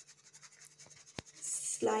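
Hand-held plastic sieve of powdered sugar shaken over a cake: mostly faint, with one sharp tap about a second in. A woman starts speaking near the end.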